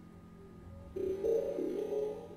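Sparse improvised live band music. After a nearly quiet second, a held, wavering pitched tone comes in about a second in.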